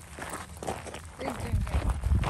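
Footsteps crunching on a gravel trail, with a low rumble on the microphone near the end.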